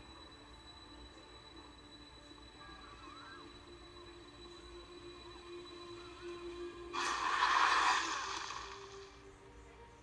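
War-film trailer soundtrack heard through TV speakers: faint, sustained music, then a sudden loud noisy burst, a battle sound effect, about seven seconds in that dies away over the next two seconds.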